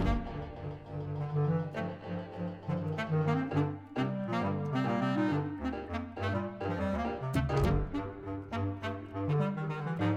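Bass clarinet playing a fast line of short, low notes, with sharp clicks scattered through the passage.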